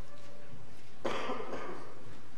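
A person coughs once, a single burst about a second in that lasts under a second.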